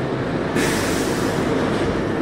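Steady rushing background noise with no clear pitch, brightening in the treble about half a second in.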